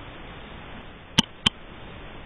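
Two sharp clicks about a third of a second apart over a steady hiss.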